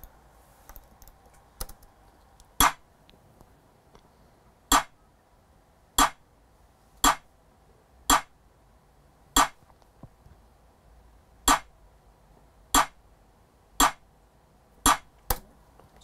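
A UK drill snare pattern played back on its own: about a dozen sharp, short snare hits at uneven, syncopated spacing, with no other drums or melody.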